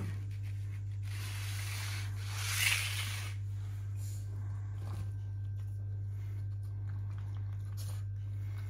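A steady low hum, with a brief rubbing, rustling noise that swells and fades about two to three seconds in while a plastic food tub is set down on a tiled floor. A few faint clicks follow around five seconds.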